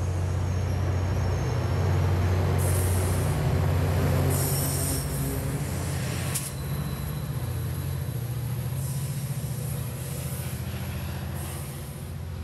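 Tri-Rail commuter train of bi-level Hyundai Rotem coaches rolling past at low speed, pushed by its EMD F40PHM-3C diesel locomotive at the rear. The locomotive's deep engine drone is loudest a few seconds in as it draws near and eases once it has passed, while short bursts of high hissing come and go.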